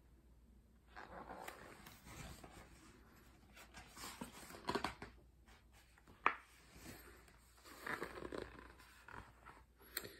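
Faint rustling and soft knocks of a hardcover picture book being handled and its page turned, with one sharper click about six seconds in.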